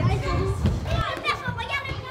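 Children's voices calling and chattering as they play in a large gym hall.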